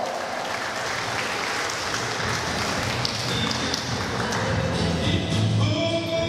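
Audience applauding, with music starting up about two seconds in: a low bass part first, then pitched melody lines near the end.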